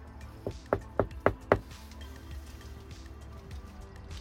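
A quick run of five knocks on a front door, about four a second, heard about half a second to a second and a half in, over steady background music.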